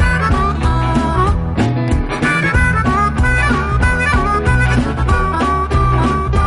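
Blues band recording with harmonica playing the lead line over a steady, rhythmic band backing.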